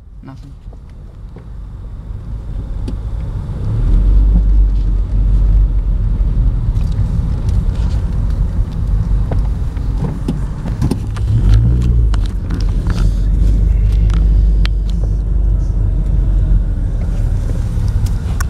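Car interior noise from a moving car: a low engine and road rumble that swells about four seconds in and then holds steady, with scattered small clicks and knocks.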